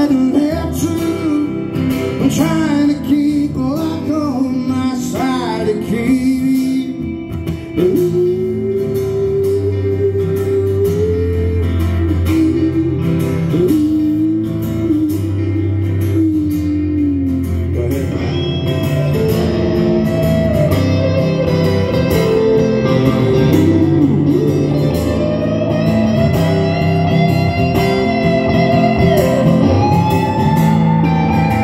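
Live band playing a country song through a stage PA, with strummed acoustic guitar, bass and drums under a bending melodic lead. About halfway through, a higher electric guitar lead line takes over.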